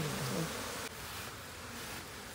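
Honeybees buzzing around an opened hive's honeycomb, a low buzz that falls in pitch in the first half second over a steady hum of the swarm. The sound drops suddenly in level about a second in.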